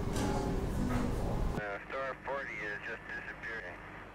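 Indistinct voices in an echoing room, cut off suddenly about one and a half seconds in. A narrow, band-limited Apollo mission radio voice follows over a steady low hum.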